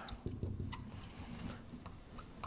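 Marker pen writing on a whiteboard, giving several short high squeaks as the strokes are drawn.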